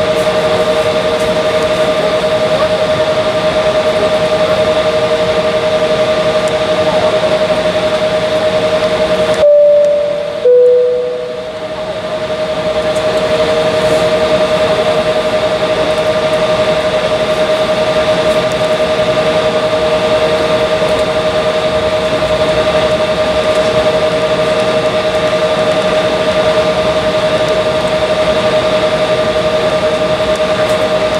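Cabin noise inside an Embraer 170 regional jet as it taxis: a steady rush with a steady two-note hum underneath. About nine and a half seconds in, the sound briefly cuts out twice, then swells back over a couple of seconds.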